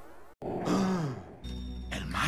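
A sweeping sound effect fades out and cuts off abruptly. After a brief gap comes a short vocal groan that rises and falls in pitch, then a low steady hum.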